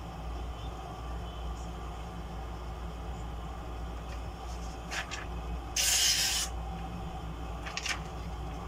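Case Cheetah pocketknife blade slicing through a hand-held sheet of paper in one stroke: a single short, loud hiss about six seconds in, with faint paper rustles before and after it.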